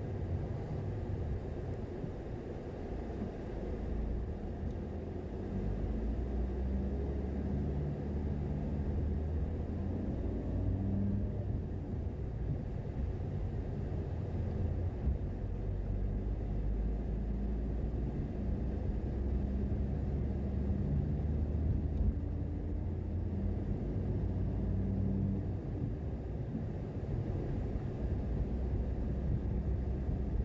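Car driving along a street: a steady low rumble of engine and tyres, the engine note shifting up and down in pitch now and then as it speeds up and slows.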